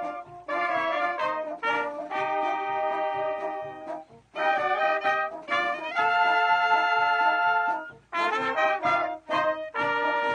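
A small wind band of flutes, clarinet, trumpets and horns playing a tune in phrases of held chords, with a faint steady drum beat underneath. Brief breaks between phrases, and a long held chord about six seconds in.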